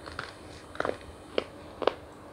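Close-miked crunching as chocolate is bitten and chewed, four sharp crunches about half a second apart.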